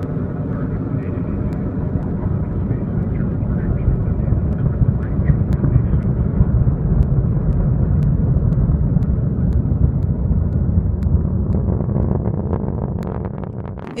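Atlas V rocket at liftoff, heard from a distance: its RD-180 first-stage engine gives a deep, steady rumble with scattered crackles. The rumble swells over the first few seconds and fades near the end as the rocket climbs away.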